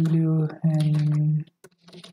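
A voice holding a long, level drawn-out sound, broken once, then a few computer keyboard keystrokes near the end as code is typed.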